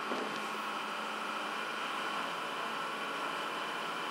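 Steady background hum and hiss of room noise, like a running fan or motor.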